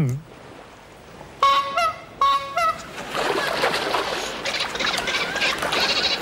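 Two short honking calls about a second and a half and two seconds in, answered from about three seconds on by the squeaky chattering of a dolphin, Flipper's trademark call.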